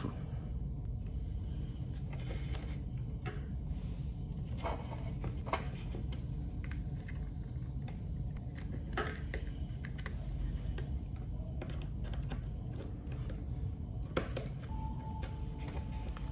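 Sparse, irregular light clicks and taps of a screwdriver and wires being worked at the screw terminals of a plastic wall switch, over a low steady hum.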